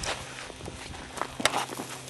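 Footsteps on a gravel dirt road: a few light, uneven crunches.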